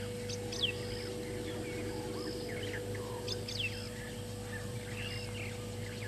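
Wild birds calling at a waterhole: two pairs of sharp, quickly falling whistled notes, about half a second in and again about three and a half seconds in, among scattered softer chirps and a short high note repeated every second or so.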